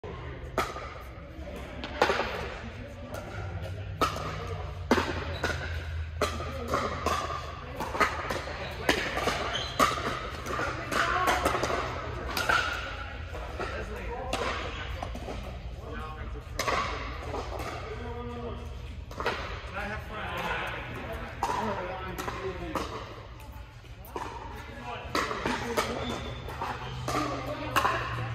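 Sharp pops of pickleball paddles striking a plastic ball, many at irregular intervals, over background voices and a steady low hum in a large indoor court hall.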